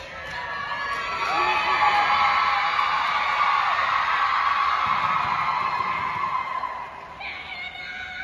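Audience cheering and screaming, many voices at once, swelling about a second in and dying down near the end.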